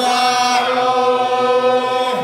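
A man's voice chanting a Shia mourning elegy in Arabic, holding one long sustained note at a steady pitch.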